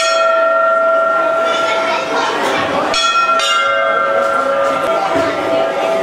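Hanging temple bell struck twice, about three seconds apart, each stroke ringing on and slowly fading.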